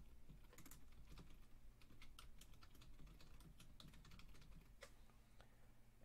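Faint typing on a computer keyboard: a run of irregular keystroke clicks as a short phrase is typed.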